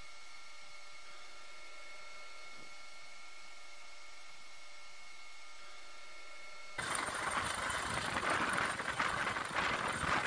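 Steady electronic hiss with faint high hum tones and nothing else. About seven seconds in it switches suddenly to loud, fluctuating rushing noise of a helicopter's engine and rotors, with wind buffeting the microphone.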